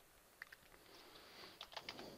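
Faint keystrokes on a computer keyboard: a couple of taps about half a second in, then a quick run of about four near the end as a word is typed into a search box.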